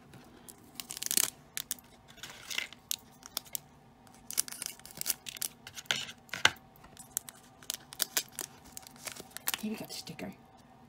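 Hands handling small plastic toy figures and a sticker card on a tabletop: a scatter of sharp clicks and taps, with several short papery rustles.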